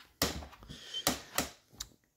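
Footsteps on a carpeted boat deck: a few sharp knocks with a brief faint squeak about a second in.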